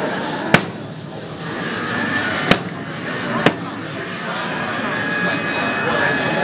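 Three sharp knocks of hard objects, the first about half a second in and the other two about two and three and a half seconds in. They sit over a steady murmur of people talking in a large hall.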